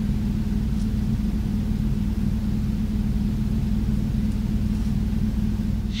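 Steady low rumble with a constant hum, unchanging throughout, which the speaker first took for an earthquake and then put down to the air conditioner running.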